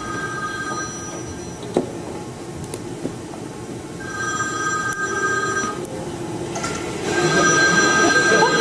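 Mobile phone ringing with an electronic ring of two steady tones sounding together, in rings of nearly two seconds with pauses of about three seconds: one ring ends about a second in, another comes about four seconds in, and a third starts near the end.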